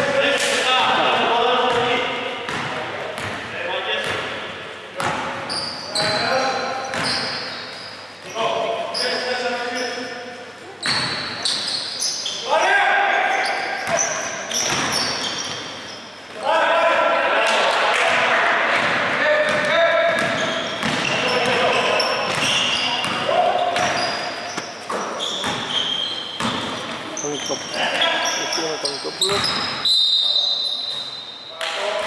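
Basketball bouncing on a hardwood gym floor during play, with voices calling out over it. It echoes in a large hall.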